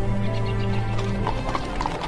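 Drama score with held low notes, then about halfway through, a horse's hooves start clip-clopping in a quick, even rhythm.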